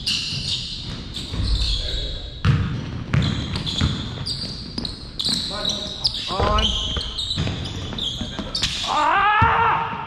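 Basketball bouncing and sneakers squeaking on a hardwood gym floor during a game, echoing in the hall. Players shout around seven seconds in and again near the end.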